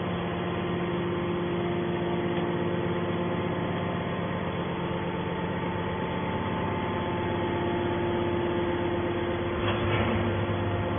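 Hydraulic power unit of a scrap-metal baler running steadily with a constant hum. A single click comes just before the end, and a lower hum joins in after it.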